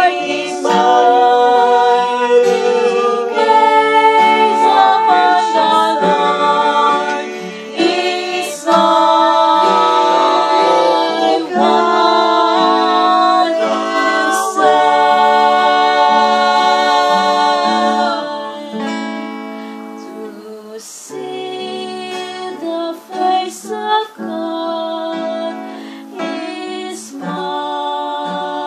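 A song: singing with guitar accompaniment in long held notes, turning softer and sparser about two-thirds of the way through.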